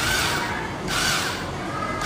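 A small cordless screwdriver's motor and gearbox running with no load, bit holder spinning: a steady whir with a thin whine that drops slightly in pitch near the end.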